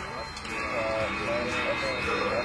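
Indistinct voices talking in the background, with no clear words, over steady outdoor background noise.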